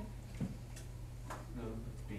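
A few sharp, irregular clicks and a brief faint voice, over a steady low electrical hum.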